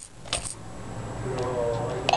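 Sharp plastic clicks and rattles from a baby toy activity arch being handled. Faint electronic tones start near the end as a button on the toy is pressed.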